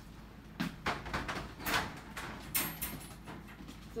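Scattered short rustles and light knocks, about half a dozen at irregular intervals, of a person moving about and searching the floor for a dropped card.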